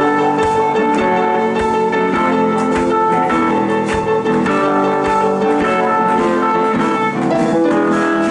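Upright piano playing a blues number: steady chords and right-hand lines at the opening of the song.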